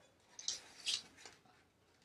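Sublimation paper crinkling as it is peeled back from a freshly baked tumbler, in a few short, soft rustles.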